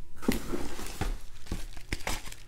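Plastic poly mailer crinkling and rustling as it is handled, with a few sharp crackles.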